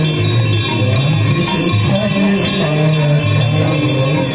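Hand bells ringing rapidly and continuously over devotional aarti singing.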